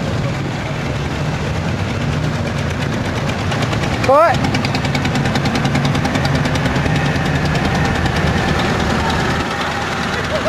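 Motorcycles with sidecars rolling past at low speed, a steady engine rumble with a rapid, even run of exhaust pulses. About four seconds in, a brief, sharply rising tone stands out as the loudest sound.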